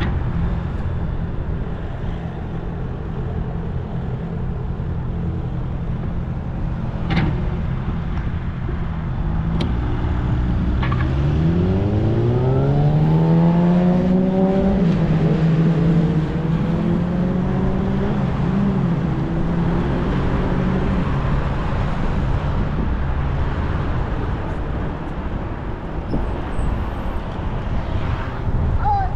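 Steady city road traffic with a car engine rising in pitch as it accelerates, starting about eleven seconds in. It then holds an even note for several seconds before fading.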